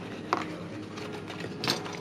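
Handling of a handmade paper-and-chipboard album as its cover is opened: faint rustling of paper, with a light click about a third of a second in and a louder one near the end.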